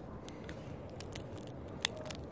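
Faint crackles from handling a bag of peanuts in the shell, then a single sharp crack near the end as a peanut shell is broken open between the fingers.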